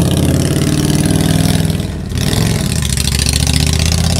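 Motor vehicle engine running steadily at close range, dipping briefly about two seconds in and then carrying on.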